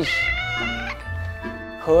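A domestic cat meowing once, a drawn-out meow of about a second, over background music.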